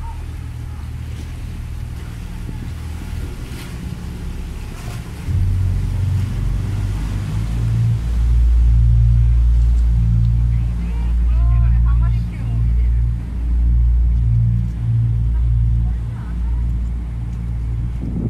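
Low rumble of a water bus running under way, mixed with wind buffeting the microphone. It grows louder about five seconds in and again near eight seconds, then swells and dips unevenly.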